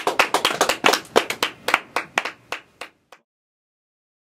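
A few people clapping after the song, the claps uneven and thinning out, then cut off abruptly about three seconds in.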